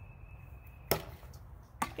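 A plastic toy bat striking a plastic ball off a batting tee: one sharp knock about a second in, over faint background noise.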